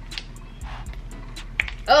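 A silicone bracelet mold being flexed and pried off a cured epoxy resin bangle: faint rubbing and small clicks, with one sharper click shortly before the end as the bangle comes free.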